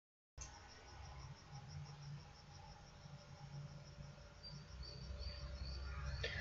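Faint, high-pitched chirps repeating evenly several times a second over a low background hum. The sound cuts in suddenly after dead silence about a third of a second in.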